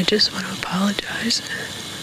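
A young woman whispering close to the microphone in short, tearful, breathy phrases.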